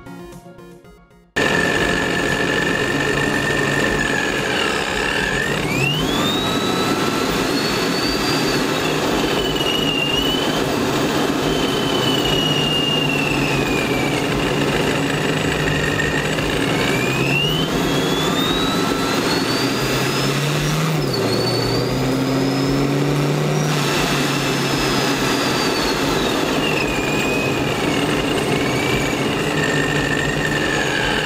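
ProCharger centrifugal supercharger and 5.7 L HEMI V8 of an AWD Dodge Charger R/T, recorded from inside the engine compartment while driving. A high supercharger whine climbs and falls with engine speed over the engine's running note. It rises twice under acceleration, with a sudden dip about two-thirds through.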